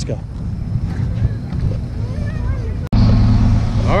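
Low outdoor rumble with faint distant voices, then an abrupt cut about three seconds in to a loud, steady low engine hum from a shuttle bus idling close by.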